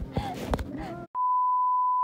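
A steady single-pitch test tone, the 1 kHz reference tone that goes with colour bars, starts suddenly about a second in, after faint voices and handling noise cut off.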